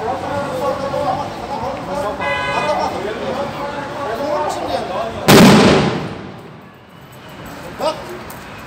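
A single loud bang about five seconds in, dying away within half a second: bomb disposal experts' controlled detonation of a suspicious package.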